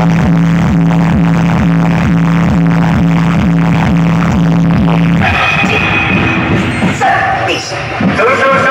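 Loud electronic dance music played through a truck-mounted DJ speaker system: a heavy bass line under a fast, steady kick drum. About five seconds in, the bass and kick drop out and a higher melody carries on alone.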